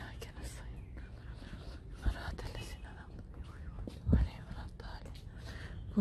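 A person whispering quietly over a low rumble, with two dull thumps about two and four seconds in.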